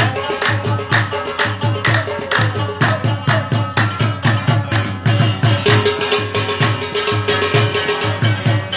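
Instrumental passage of a folk qawwali: a rubab plucks a melody with sliding notes over a quick, steady beat hand-struck on a large pot used as a drum.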